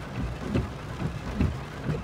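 Rain falling on a car's roof and windscreen, heard from inside the cabin, with the windscreen wipers sweeping over a low rumble.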